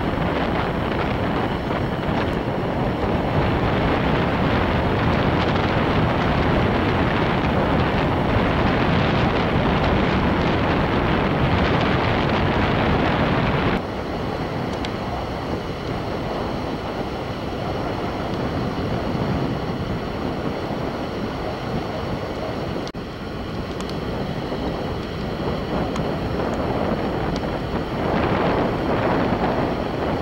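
Wind buffeting the camera microphone, a loud, steady rushing noise. About fourteen seconds in it drops abruptly and carries on more softly.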